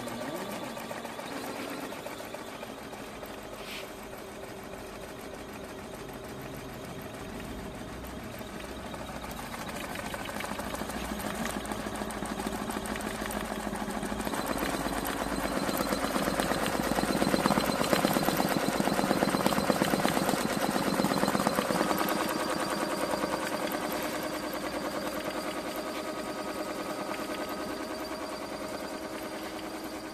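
DOIT DT1201 single-head 12-needle computerized cap embroidery machine stitching a design onto a cap: a fast, steady clatter of needle strokes, louder in the middle and easing off toward the end.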